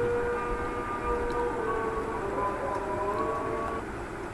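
A drawn-out pitched tone with several overtones, held steady at first and then drifting slowly in pitch, fading out shortly before the end.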